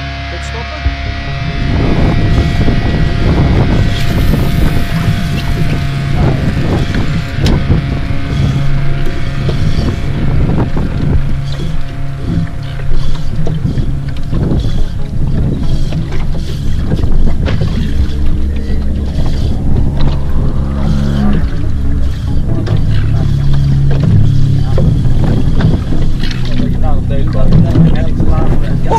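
A boat engine running steadily under way at sea, with wind buffeting the microphone and occasional knocks; a music track fades out in the first two seconds.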